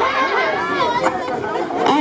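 Several people talking over one another at once, with no music playing.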